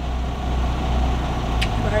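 Steady low hum of a semi truck's diesel engine idling, heard from inside the cab.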